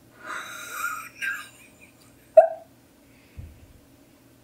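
A woman's breathy, whispered exclamation, then a single short, sharp vocal squeak as she starts to laugh. A soft low bump comes near the end.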